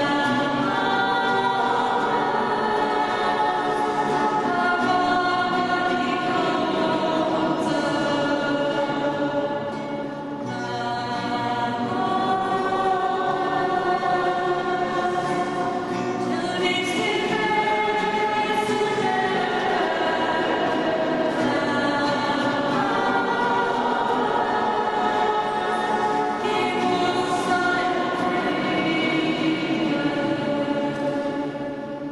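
Women's voices singing a worship song together to strummed acoustic guitar accompaniment, with a short breath between phrases about ten seconds in.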